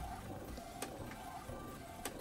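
DTF film printer running mid-print: a faint steady motor hum with a single soft click a little under a second in.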